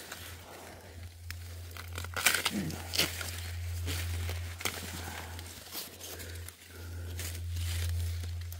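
Maize leaves and husks rustling and crackling as the plants are pushed aside and handled, in irregular bursts, over a steady low hum.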